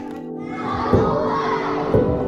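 A large group of young children shouting and chattering together, with music of steady held notes coming in about a second in.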